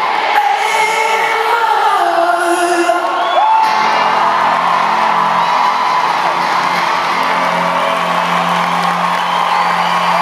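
Live performance in a large hall: a man singing over electric guitar, with the crowd whooping and cheering, the crowd noise swelling about four seconds in over a held chord.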